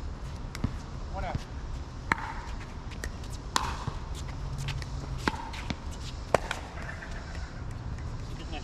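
Pickleball paddles striking a hard plastic ball in a rally: a string of sharp pops about a second and a half apart, the last one the loudest. A short called word comes about a second in.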